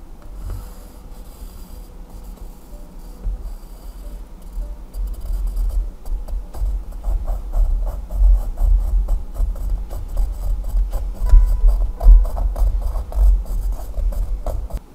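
A pencil scribbling on sketchbook paper with rubbing, scratching strokes. From about five seconds in it speeds into quick back-and-forth hatching and gets louder, with dull knocks from the pad on the table.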